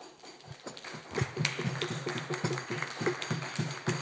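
A small audience applauding: many separate, irregular claps that start about half a second in and thicken into steady clapping.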